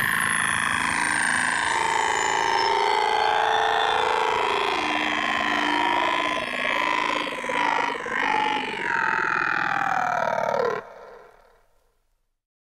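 Closing seconds of an electro track: a sustained synthesizer drone of several wavering, gliding tones with no beat, swelling and dipping in the second half, then cutting off near the end and dying away to silence.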